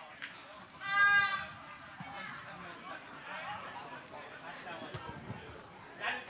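A single loud shout held for about half a second, about a second in, over faint distant voices and calls from the pitch.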